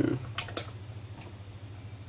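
A few quick computer keyboard keystrokes about half a second in, then a steady low hum.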